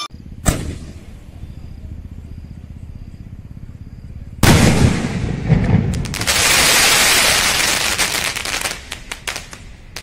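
Fireworks going off: one sharp bang about half a second in, then a loud burst about four and a half seconds in. This is followed by a long hissing spray and rapid crackling near the end.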